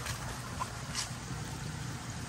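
Water lapping and dripping in a shallow pool as a large catfish is held and lifted by hand, with a couple of faint small splashes, over a low steady hum.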